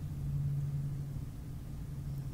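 A low steady hum with faint even background noise, a little stronger in the first second.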